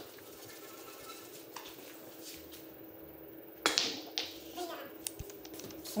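Carom billiard balls clicking: one sharp clack about two-thirds of the way in, with a few lighter clicks around it.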